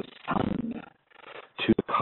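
A man's voice in a hesitation between phrases: a drawn-out voiced sound lasting under a second, a fainter one after it, then a few short sharp clicks near the end.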